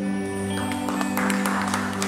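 A live church band's closing chord held on guitars and keyboard, with the audience starting to clap about half a second in.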